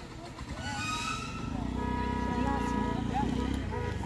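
A motor engine running with a steady hum from a little under two seconds in until just before the end, under voices.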